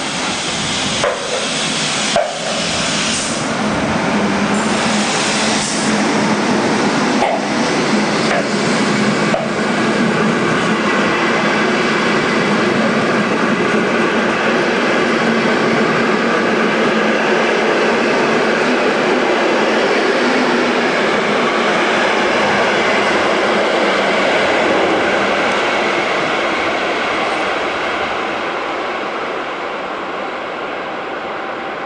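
A locomotive-hauled passenger train of silver coaches passes close by on the near track. The green electric locomotive goes by with several sharp clicks in the first ten seconds, then the coaches' wheels keep up a steady rolling noise that eases off near the end.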